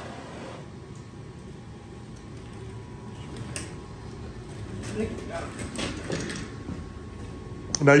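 Steady, quiet hum of the maple sap evaporator's forced-draft blower fan, with a faint thin whine. Faint voices are heard partway through.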